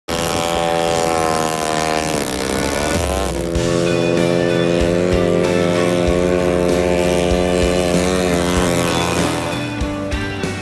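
Snowmobile engine running hard; its pitch drops and climbs back about two to three seconds in, then holds at high revs until it eases near the end.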